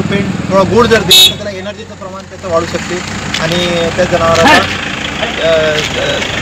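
A man speaking Marathi outdoors, with road traffic and a vehicle engine running behind him, and a brief high-pitched sound about a second in.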